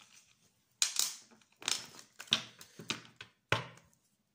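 A deck of oracle cards being picked up and handled on a wooden tabletop: a few short rustles and knocks, roughly one a second.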